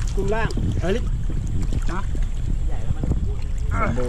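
Short bursts of men's speech in Thai over a steady low rumble of wind buffeting the microphone.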